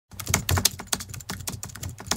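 Computer-keyboard typing sound effect: a quick, irregular run of sharp keystroke clicks, several a second, timed to the title text typing itself out on screen.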